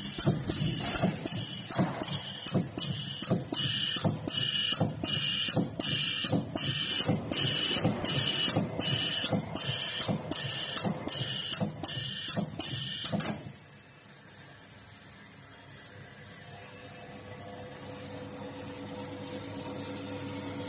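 Automatic commutator fusing (spot welding) machine cycling through a motor armature's commutator bars. It makes a regular series of short, sharp hissing strokes, about three every two seconds and some twenty in all, one fusing stroke per bar as the armature indexes round. The strokes stop about two-thirds of the way through, leaving a quieter steady hum that slowly grows louder.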